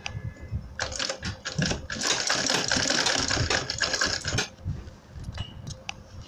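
Sewing machine stitching a webbing strap down onto a PVC leather bag panel: a rapid mechanical clatter that starts about a second in, runs at full speed for a couple of seconds, then slows to a few single clicks near the end.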